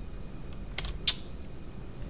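Two short clicks from operating the computer, about a third of a second apart a little under a second in, over a low steady hum.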